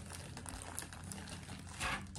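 Faint rustling and crinkling of plastic packaging being handled, with a louder rustle near the end.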